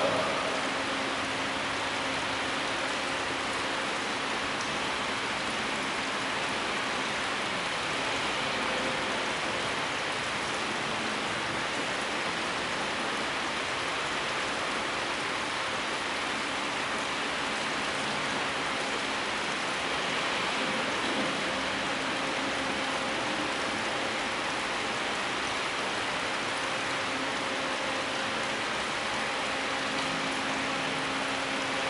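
A steady, even hiss of noise with a faint low hum beneath it, unchanging throughout, with no speech.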